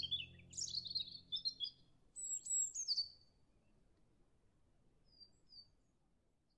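Small birds chirping and trilling in quick high phrases, busiest in the first three seconds, then only a few faint calls. A soft music track fades out underneath in the first two seconds.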